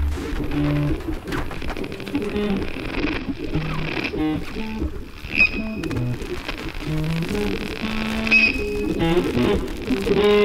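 Large improvising jazz ensemble playing live: a busy, shifting texture of many short, scattered notes, with electric guitar picking among them and two brief high pings.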